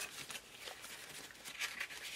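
Faint rustling and light ticks of paper sticker sheets being handled and shuffled.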